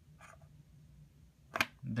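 Quiet room tone with one sharp click about one and a half seconds in, just before speech starts.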